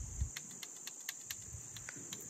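Insects trilling steadily in the background, a constant high-pitched buzz, with a few faint ticks.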